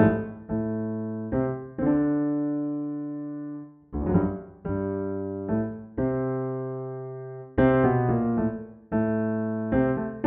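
Yamaha digital piano playing slow, improvised new-age music: chords struck one after another, each left to ring and fade, with a short lull just before four seconds in.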